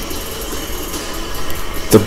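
Steady wash of television broadcast audio from a wrestling entrance, mostly arena crowd noise, heard through the TV's speaker and picked up in the room.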